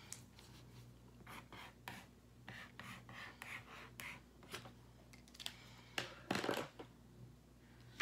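Black pen scratching across paper in short, faint strokes, drawing a zigzag line, with a louder rustle of the paper about six seconds in.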